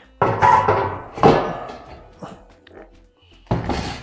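Metal lid with a cyclone separator mounted on it being set down and seated on a steel dust bin: a clank and scrape about a quarter second in, a second knock about a second later followed by a faint metallic ring, and a low thud near the end.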